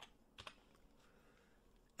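Near silence, with a few faint computer keyboard clicks in the first second.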